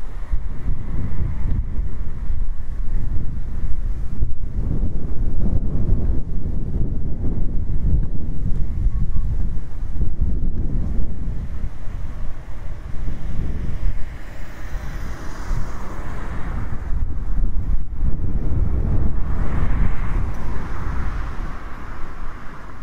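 Wind buffeting the microphone: a heavy, gusting low rumble. A higher rushing swell rises and fades about fifteen seconds in, and another comes near the end.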